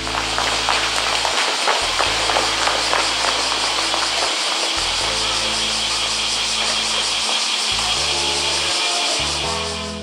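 Soft background music under a loud, steady hiss of outdoor ambience that cuts in and cuts out abruptly, with a few faint clicks in the first seconds.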